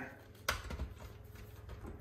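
Light plastic clicks and handling sounds as a blender's power cord is slid into a stick-on plastic cord organizer, with one sharper click about half a second in and fainter ticks after.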